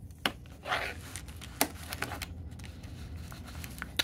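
Faint clicks and scraping of a USB flash drive being fitted into the rear USB port of a Dell laptop, with one sharper click about a second and a half in.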